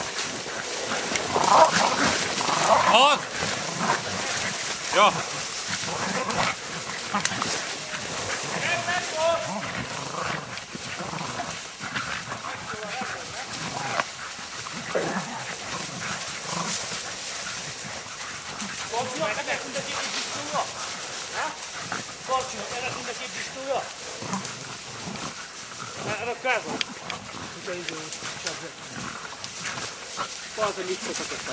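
A pack of hunting dogs barking over a downed wild boar, busiest and loudest in the first few seconds.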